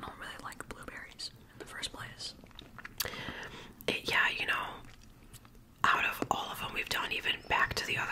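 Close-miked whispered talking between two people, with small mouth clicks in between.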